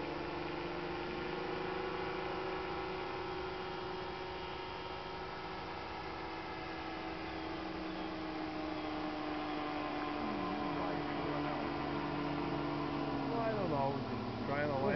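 Vector 627 ultralight's engine droning steadily in flight, one held note whose pitch sinks slowly and slightly over the seconds.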